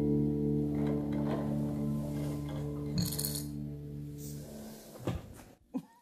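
Acoustic guitar's last chord ringing on and slowly dying away. There is a faint clink about halfway through and a soft thump near the end, after which the ringing stops.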